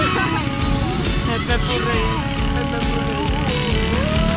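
Music with a gliding, sung-like melody over the low, steady rumble of road traffic.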